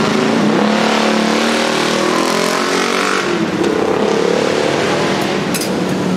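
Engine of a passing motor vehicle, its pitch rising twice as it accelerates.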